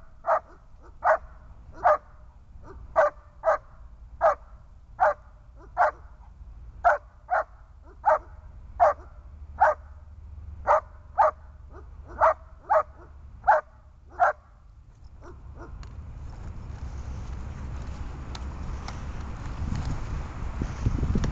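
German shepherd barking in short, sharp single barks, about twenty in fourteen seconds, at a helper holding a bite sleeve during protection training. The barking then stops, and a rush of noise rises steadily.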